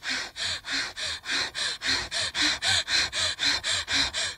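Rhythmic breathy panting, about four to five quick breaths a second with a faint voice in some of them, performed as a vocal effect in a film-song track.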